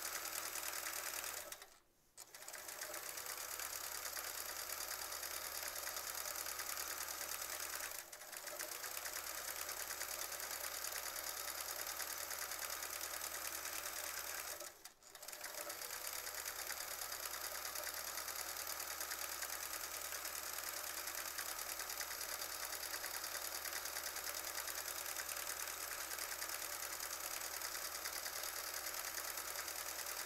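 Sewing machine running at a steady speed while free-motion quilting through a pinned quilt sandwich. It stops briefly three times: about two seconds in, about eight seconds in, and about halfway through.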